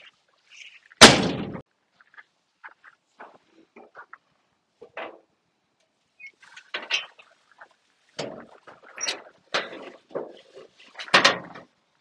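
A steel pickup cab door slammed shut about a second in, the loudest sound. Scattered metal clicks and clunks follow, from about six seconds on, as the truck's hood side panel is unlatched and lifted, with one heavier clunk near the end.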